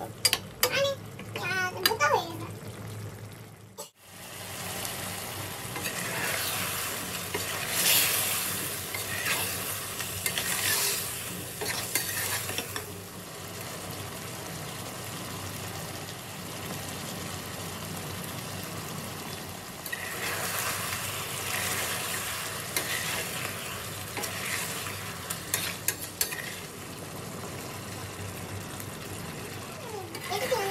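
Chicken pieces sizzling in their juices in a stainless steel pan, with a metal spoon stirring and scraping against the pan in spells. The sound briefly cuts out about four seconds in.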